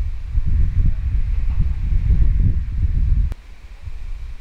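Wind buffeting the microphone outdoors: a loud, gusty low rumble that drops away sharply with a click a little past three seconds in.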